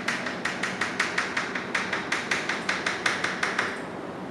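Chalk tapping against a blackboard in quick short strokes, about five a second, as hatch marks are drawn along the back of a curved mirror line. The strokes stop shortly before the end.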